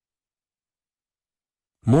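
Dead silence in a pause of a read-aloud story, then a narrator's voice starts speaking again near the end.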